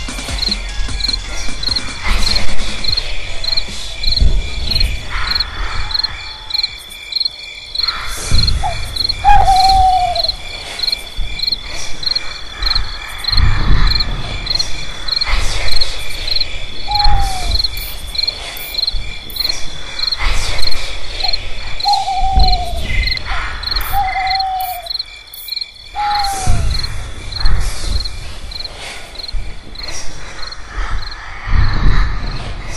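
Crickets chirping in a steady, evenly spaced rhythm, with a few short falling hoot-like calls and a deep rumble underneath that comes and goes.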